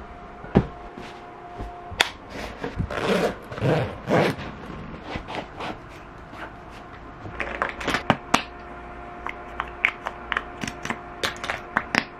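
Handling sounds: a scattered run of small clicks, taps and rustles, with a longer rustle about three to four seconds in, from things being picked up and fiddled with (pillows, sneaker laces, a lip gloss tube). A faint steady hum runs underneath.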